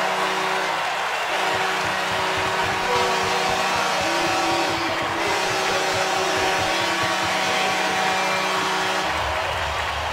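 Arena goal horn sounding one long steady note over crowd cheering and music, celebrating a home-team goal; the horn cuts off near the end.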